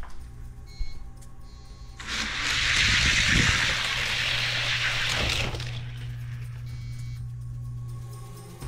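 Four die-cast Hot Wheels cars rolling down an orange plastic drag track: a loud, even rushing rattle of wheels on plastic that builds about two seconds in, lasts about three and a half seconds, then fades. A single click comes about a second in, and steady background music runs underneath.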